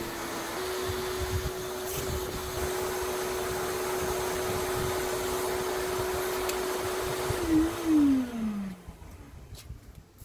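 Wet/dry shop vacuum running steadily as it sucks sand out of a kayak's hull. About three quarters of the way in it is switched off with a brief louder bump, and its motor whine falls in pitch as it spins down.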